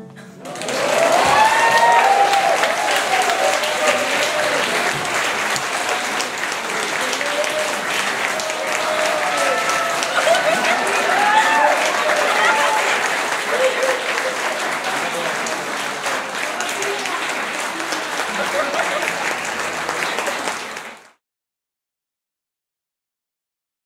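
Audience applauding and cheering, with whoops and shouts over steady clapping; the sound cuts off suddenly near the end.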